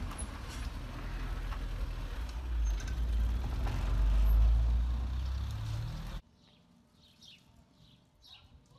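A loud, low outdoor rumble that swells to its peak a little past the middle, then cuts off abruptly about six seconds in, leaving faint bird chirps.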